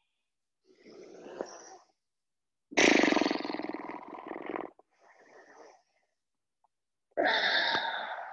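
A person breathing deeply and audibly close to the microphone during a supine twist: quieter breaths alternating with louder, rough-sounding ones, twice over.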